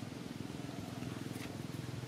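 A steady low rumble with a fast, even pulse.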